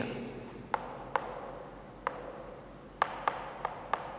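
Chalk writing on a chalkboard: a faint scraping broken by about seven sharp chalk taps, spread unevenly, as words are written out.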